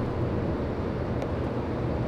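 Steady low mechanical hum, with a faint click about a second in.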